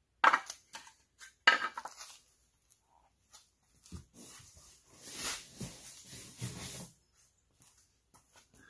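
Loose metal mounting hardware being handled, clinking and clattering, with two sharp ringing knocks near the start and about a second and a half in. Later comes a stretch of rustling packaging.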